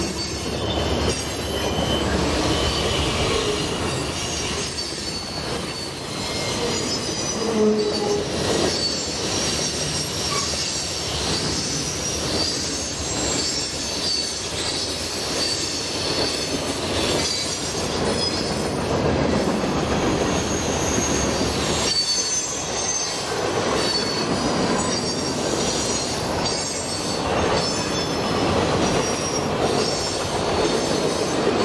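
Norfolk Southern mixed freight train rolling past at close range: a steady rumble of wheels on rail, with thin high wheel squeals and clacking over rail joints.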